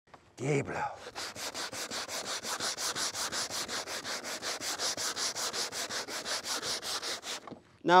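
Hand sanding of painted wood baseboard with a mesh sanding sheet (Diablo SandNet) on a foam sanding block: rapid back-and-forth scratchy strokes, about six a second, stopping shortly before the end.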